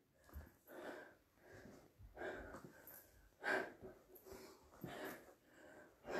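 A woman breathing hard from exertion during sit-ups with double punches: quiet, irregular puffs of breath, roughly one a second.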